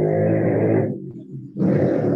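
A voice coming through the video call, distorted so that no words come through clearly. It breaks off about a second in and starts again shortly before the end.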